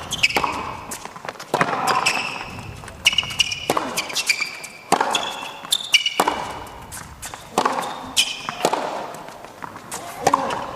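Tennis rally on an indoor hard court: a sharp racket-on-ball hit about every second and a half, with short high squeaks between shots, typical of shoes on the court.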